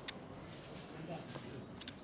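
Indistinct voices of people talking in a corridor, with a sharp click just after the start and a short run of clicks near the end.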